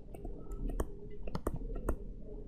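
A pen stylus clicking against a tablet screen as a word is handwritten: about half a dozen short, sharp clicks at irregular intervals.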